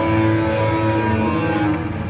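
Live rock band's electric guitars and bass holding one sustained chord at the close of the song, with no drum beat, easing off near the end.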